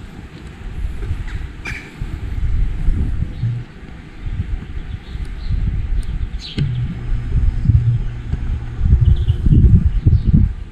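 Low, uneven rumble of wind buffeting the microphone, rising and falling in gusts, with a few short bird chirps about two seconds in and again near seven seconds.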